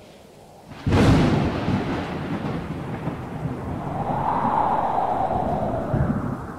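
Logo-reveal sound effect: a sudden boom about a second in, then a long rumbling tail like thunder, with a tone swelling and fading near the end.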